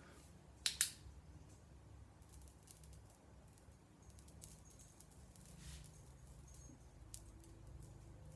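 Two sharp clicks a little under a second in, as a handheld blue laser pointer is switched on, then a faint low steady hum with a few faint ticks while the beam singes beard hair.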